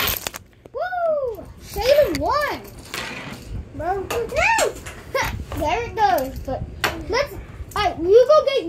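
Children's voices, talking or vocalizing without clear words, with pitch sliding up and down, broken by a few sharp plastic clicks as small toy trucks and keys are handled.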